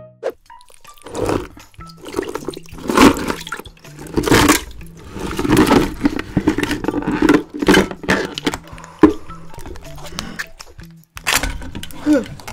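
Live swimming crabs tumbling out of a plastic tub into a glass dish: a series of scraping, clattering rushes of shells and legs against plastic and glass, with sharp knocks in between.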